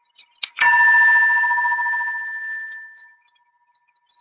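A bell struck once, ringing with two clear tones that fade away over about two and a half seconds, after a couple of small clicks.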